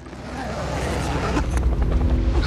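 A low rumbling swell that grows steadily louder, a trailer sound effect building tension.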